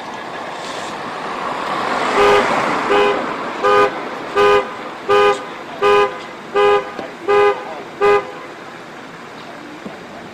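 A vehicle horn sounding nine short, evenly spaced blasts, about one every 0.7 seconds, over a rush of noise that builds during the first two seconds.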